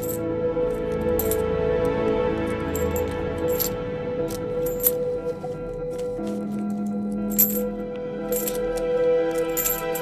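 Background music of long held notes, with about ten short metallic clinks of coins dropping scattered irregularly over it.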